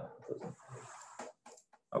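The tail of a spoken "uh", then a soft hiss lasting well under a second, followed by a few faint clicks from computer input near the end.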